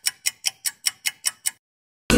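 Clock-like ticking of a quiz countdown-timer sound effect, about five evenly spaced ticks a second, stopping about a second and a half in. It counts down the time to answer.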